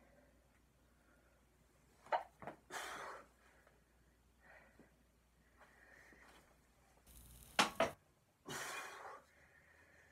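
A man exhaling hard twice while pressing a plate-loaded dumbbell on a weight bench, each breath coming just after a couple of sharp clicks or knocks.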